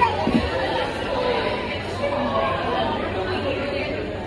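Background chatter in a busy restaurant: many people talking at once, steady throughout.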